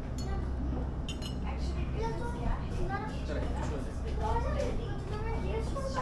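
Indistinct voices talking, with a brief clink of a metal spoon against a porcelain tea-tasting cup about a second in, over a low steady hum.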